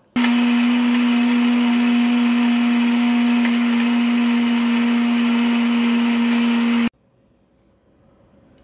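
Electric mixer grinder running at one steady pitch, grinding grated coconut and dried red chillies into a masala paste. It starts abruptly at the beginning and switches off suddenly about a second before the end.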